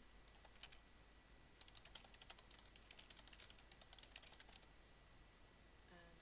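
Faint typing on a computer keyboard: one click, then a quick run of keystrokes from about a second and a half in until past four seconds.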